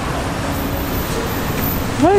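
Steady street traffic noise, an even rumble with no distinct events.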